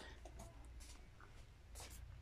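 Near silence over a low steady hum, with three or four faint, brief rustles or scuffs, like a hand brushing cardboard or moving the phone.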